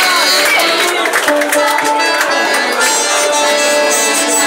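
Live band music with a violin among the instruments; from about a second and a half in, several notes are held steadily together.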